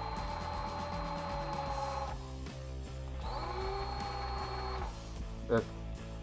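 Cordless drill running in two short bursts, the second spinning up with a rising whine, while drilling a small wooden lure body. Background guitar music plays throughout.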